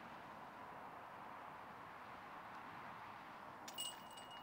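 Faint, steady outdoor background hiss with distant road traffic. A few clicks and a thin high tone come in near the end.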